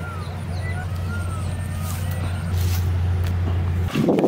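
A steady low rumble that grows louder in the second half and cuts off abruptly just before the end, with faint bird chirps above it.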